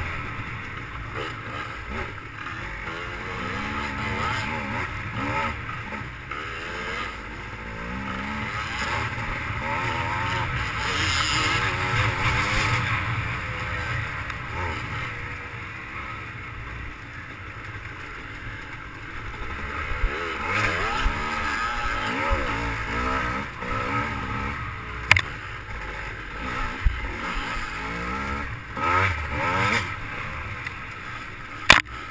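GasGas dirt bike engine heard from a camera mounted on the bike, its revs rising and falling over and over as the rider works the throttle along a rough trail. A few sharp knocks come in the last few seconds.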